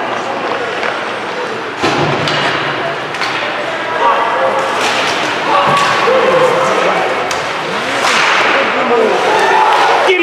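Ice hockey game heard from the stands: crowd chatter and shouted voices over the rink, with sharp clacks of sticks and puck striking. The crowd noise swells near the end during a scramble at the net.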